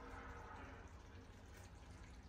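Near silence: kitchen room tone with a faint steady low hum.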